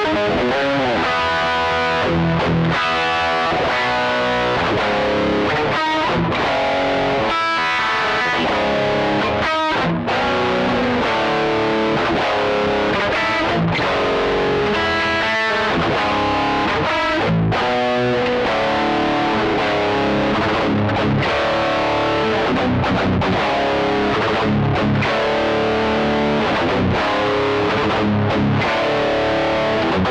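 Cort X2 electric guitar with Ibanez V7 and V8 humbuckers, played with heavy distortion through a Tube Screamer, an analog delay and a Hughes & Kettner Metal Master amp: improvised metal riffs, with a few brief breaks between phrases.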